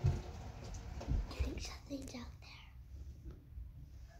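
Whispered speech, with two low thumps, one at the start and one about a second in.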